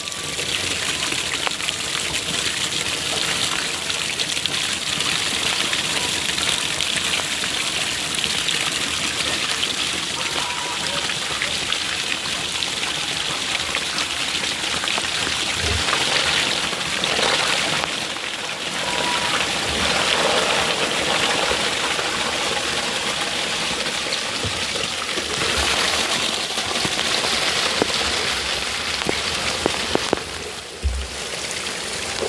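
Water gushing steadily out of a tipped blue plastic drum as it is emptied together with a mass of live stinging catfish (shing) fry.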